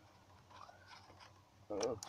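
Low background noise, then a man's voice speaking a short word near the end.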